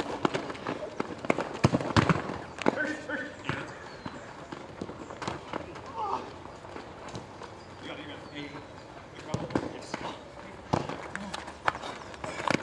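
A soccer ball being kicked and bouncing, with players' running footsteps on a plastic-tile court: scattered sharp thuds throughout, several close together near the start and again near the end, over distant shouting voices.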